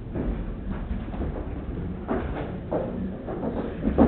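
Footsteps of several people walking onto a raised hollow stage platform, irregular knocks and thuds over the room's background noise.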